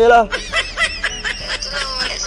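A young man laughing hard in quick high-pitched bursts, breaking out right after a last spoken word.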